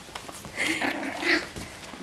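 Havanese puppies play-fighting, with a short run of small puppy vocal sounds lasting about a second in the middle.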